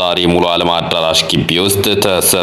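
Speech only: a voice narrating without a break.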